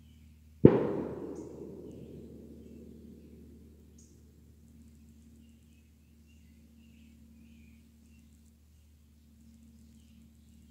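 A single sharp bang a little over half a second in, followed by a long echoing tail that fades out over about three seconds.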